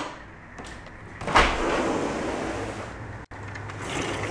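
A sliding screen door rolling along its track about a second in, a sudden start followed by about two seconds of rolling noise that stops abruptly. Under it, steady rain on a tin roof.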